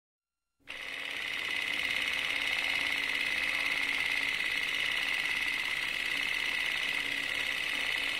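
A steady, fast mechanical clatter that starts abruptly about half a second in and keeps an even pace, with a faint steady hum underneath.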